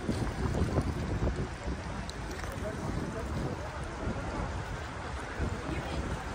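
Gusty wind buffeting the microphone in low rumbles, strongest in the first second or so, over choppy lake water lapping.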